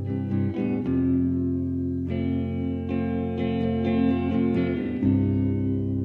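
Electric guitar playing sustained chords, changing chord a few times: about a second in, about two seconds in, and again about five seconds in.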